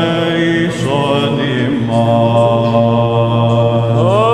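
Male Byzantine chanters singing a slow, drawn-out melody in the diatonic Grave mode (Varys) over a steady low held drone note (the ison). The melody moves to a new pitch about a second in and settles on a long held note about two seconds in.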